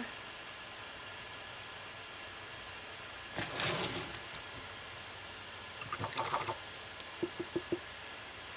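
A paintbrush swished briefly in a water container about three and a half seconds in, followed by a few light clicks and then four quick taps, typical of a brush being knocked against the container's rim.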